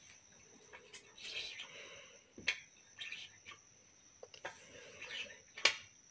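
Faint handling sounds of a bar magnet and a steel needle being picked up and rubbed together over a plastic tablecloth, while the needle is stroked with the magnet to magnetize it. A few sharp clicks, the loudest near the end, with soft rustling between them.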